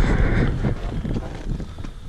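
Strong wind buffeting the microphone: a low, gusting rumble, loudest at the start and easing off.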